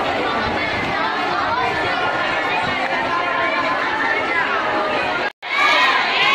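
Crowd of schoolchildren chattering, many voices overlapping at once. The sound cuts out for a moment about five seconds in, then the chatter comes back louder.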